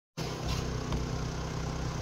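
A steady, low mechanical hum from a running motor, with an even drone of low tones.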